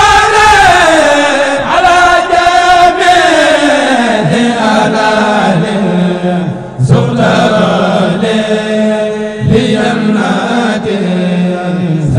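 A man chanting solo in long, melismatic lines, the held notes sliding slowly downward, with short breaths between phrases, over a steady low drone.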